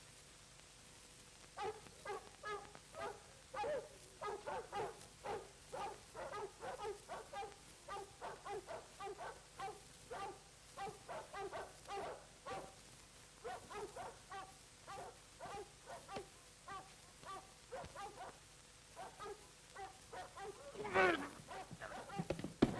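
An animal's short whimpering cries, repeated about two or three times a second, from a couple of seconds in until near the end. A louder, sliding cry comes just before the end.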